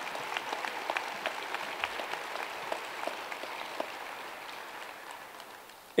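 Audience applauding, a spatter of clapping that slowly dies away over several seconds.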